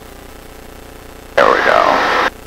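Steady drone of a Van's RV light aircraft's engine at takeoff power, heard faintly through the headset intercom feed. About one and a half seconds in, a voice cuts in over it.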